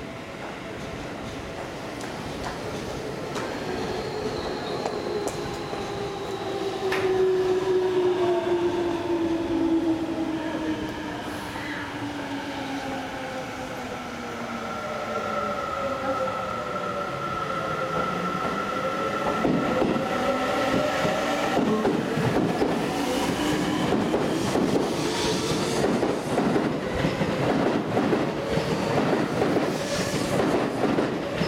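Seibu 30000 series electric train pulling out of the station: electric motor tones gliding in pitch, then a quickening clatter of wheels over rail joints as it picks up speed, growing louder toward the end.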